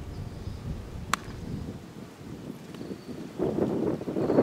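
A single sharp crack about a second in, over a steady low rumble of wind on the microphone.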